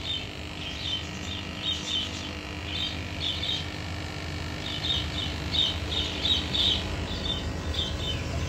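Small birds chirping over and over in short, high clusters, over a steady low hum.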